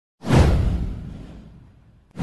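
Intro whoosh sound effect with a deep boom underneath: it swells up suddenly just after the start and fades away over about a second and a half.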